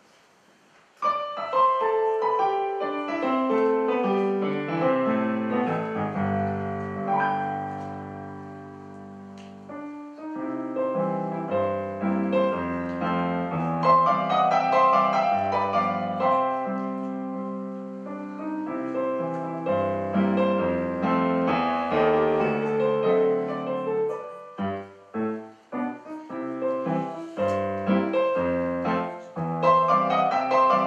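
Solo piano played on a Yamaha digital piano, starting about a second in with full chords and flowing melodic lines. Near the end it turns to a run of short, detached chords with brief gaps between them.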